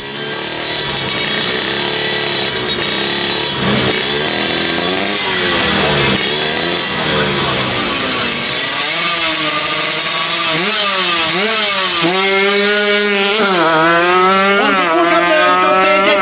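Small single-cylinder drag motorcycle engine revving hard, its pitch rising and falling again and again. In the second half the revs climb and drop in longer, quicker pulls, as at the launch of a drag run.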